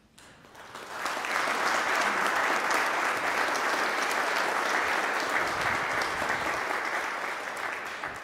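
Applause from a congregation and choir. It builds over the first second, holds steady, and tapers off near the end.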